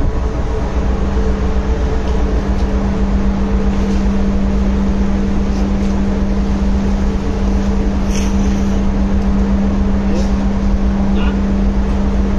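Ship's engine and machinery droning steadily on deck while the vessel is underway, a constant low hum with no rise or fall.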